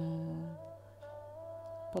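A woman's held hesitation hum, a steady-pitched "mmm" lasting under a second at the start, then fading into a low, steady background hum.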